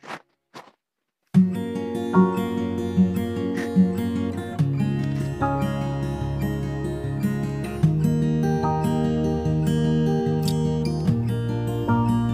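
Instrumental background music with plucked, guitar-like notes in a steady rhythm, starting about a second in after a brief silence.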